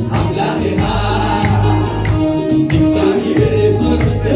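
Live gospel worship music: a man singing through a microphone and sound system over music with deep bass notes and a steady beat.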